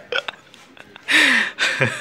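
A person laughing in short breathy bursts, with a louder breathy laugh with a falling pitch about a second in.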